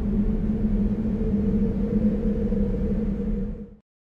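A steady low rumbling drone with a held, deep hum under it, used as an intro sound effect; it fades down and cuts off shortly before the end.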